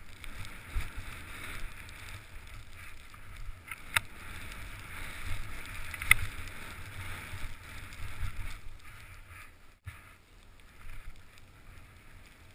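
Skis running through soft, tracked snow: a steady hiss of snow under the skis over a low rumble of wind on a head-mounted camera microphone, with two sharp clicks about four and six seconds in. It grows quieter near the end.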